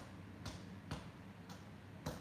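Hand hammer striking steel on a small anvil while forging an axe head: sharp blows about half a second apart, the last one lighter.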